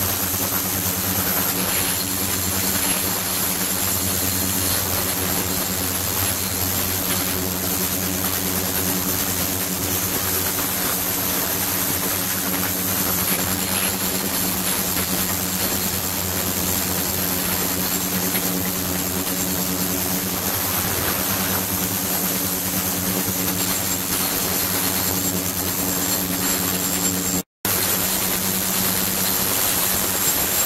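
Ultrasonic tank running with glassware immersed in the liquid: a steady hiss of agitated, cavitating water over a low multi-tone hum and a faint high whine. The sound cuts out for an instant near the end.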